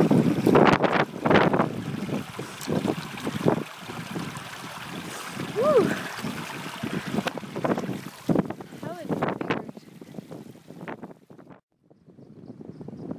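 Wind buffeting an iPhone's microphone, with irregular knocks and rubbing as the hand-held phone is jostled. The sound cuts off abruptly near the end.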